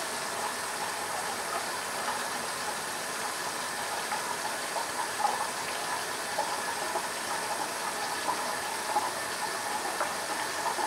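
Cartridge razor scraping through two- to three-day stubble under shaving cream in short strokes, heard as faint scratchy flecks over a steady background hiss.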